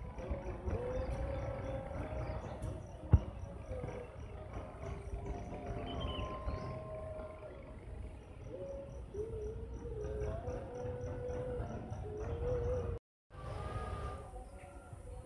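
An insect calling outdoors: an even series of high ticks about four a second that pauses in the middle. Under it are a low rumble and faint wavering tones like distant music or singing. There is a sharp knock about three seconds in and a brief dropout near the end.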